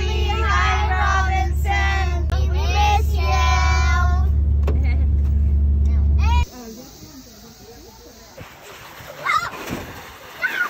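A group of children singing loudly together inside a van's cabin, over a steady low rumble of the van. The singing stops about four seconds in. The rumble cuts off suddenly at about six and a half seconds, leaving a quieter cabin with a few scattered voices.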